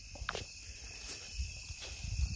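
Crickets chirring steadily in several high pitches, with faint footsteps on the soil.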